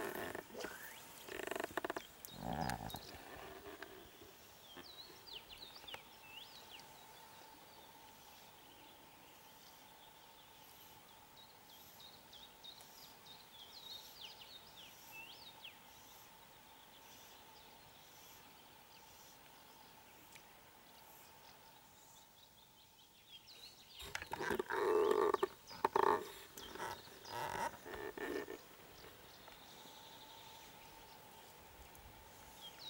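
Small birds chirp faintly on and off through the first half. Near the end a series of loud animal calls sounds, several in a row over a few seconds.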